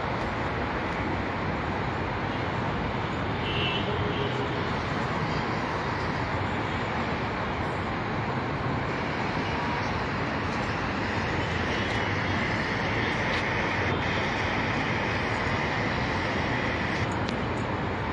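Steady, even background noise of a crowded hall, with no clear voices or music standing out.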